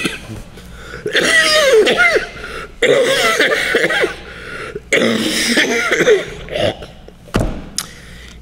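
A man coughing and clearing his throat in three bouts of about a second each, with a short thump near the end.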